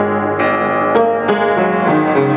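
Vintage 1910 upright piano played, chords and melody notes ringing over one another, with fresh notes struck about half a second in and again a little past a second in. A brief sharp click sounds near the middle.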